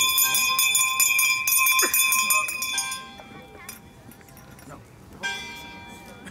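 A bell ringing with quick repeated strikes for about three seconds, then a second short burst about five seconds in, with voices underneath.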